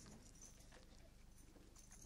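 Near silence: faint room tone with a low hum and a few soft knocks.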